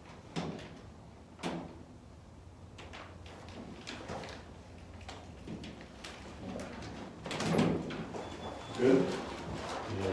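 A large paper-backed vinyl decal sheet being handled against a glass door: rustling and tapping, with a couple of sharp knocks in the first two seconds.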